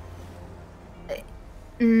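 A person's closed-mouth "mm", loud and held at one steady pitch, starting near the end. Before it there is only low background and a brief small vocal sound about a second in.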